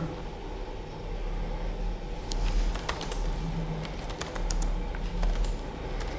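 Typing on a computer keyboard: irregular key clicks that start about two seconds in and come in short runs.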